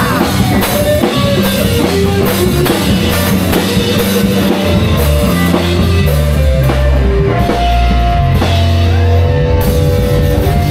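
Live rock trio of electric bass, electric guitar and drum kit playing loud, with a driving drum beat and sustained bass notes.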